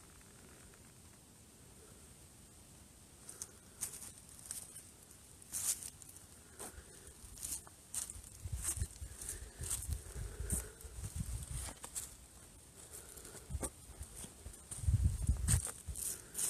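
Footsteps crunching through dry fallen leaves, irregular steps starting a few seconds in, with a low rumble on the microphone near the end.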